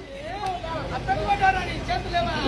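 Speech: a voice talking more quietly than the amplified address around it, with background chatter, over a low rumble that builds toward the end.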